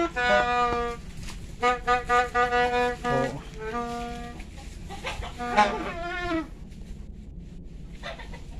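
Toy New Year's trumpets (terompet tahun baru) blown by children, giving a string of buzzy honking notes. Some are held for about a second and some are short and repeated, with a wavering, bending note just past the middle. The blowing dies away in the last second or two.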